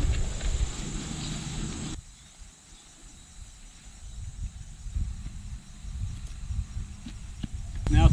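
Loose dirt being pushed in and tamped down by hand around the base of a freshly set cedar tree: irregular dull thuds and scuffs. A steady insect chirr is in the background for the first two seconds.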